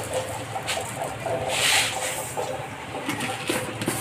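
Granulated sugar poured from a lid into an aluminium kadai: a short hissing rush of grains about one and a half seconds in.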